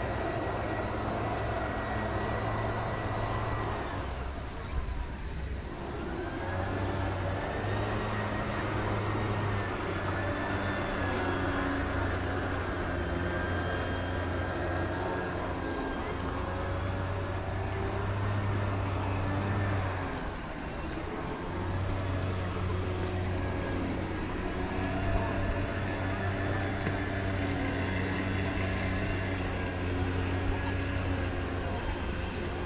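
A motor hums steadily and drops away briefly twice, about four seconds in and again about twenty seconds in.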